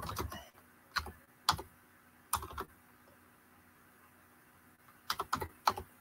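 Typing on a computer keyboard: a few scattered keystrokes, a pause of about two seconds, then a quick run of keys near the end.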